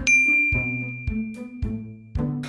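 A bright ding sound effect, struck once and ringing on as a single high tone for about two seconds, over background music with a soft beat about twice a second.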